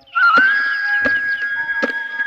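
A long, steady whistle-like tone that slides up briefly at its start and then holds. Short chirps sound above it, and three sharp knocks come within about two seconds.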